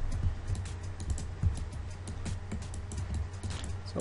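Computer keyboard keys and mouse buttons clicking in a quick, irregular run over a steady low electrical hum.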